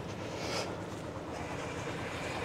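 Steady low street background noise, a continuous rumble without words, with a brief hiss about half a second in.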